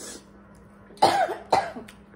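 A person coughing twice in quick succession, about a second in and again half a second later.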